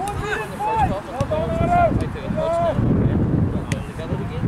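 Indistinct shouts and calls from players on a football pitch, several short raised voices in the first three seconds, over the rumble of wind on the microphone.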